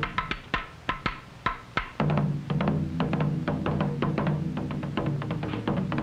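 Korean barrel drum struck rapidly with wooden sticks. Sharp, quick strikes run for about two seconds, then they crowd together into a dense, continuous roll over a steady low boom.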